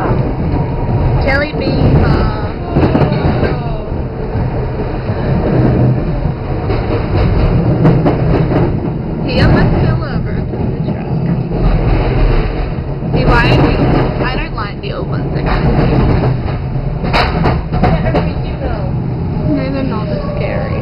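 Electric tram running, heard from inside the car: a steady low rumble of wheels on rails and motors, with indistinct voices over it at times.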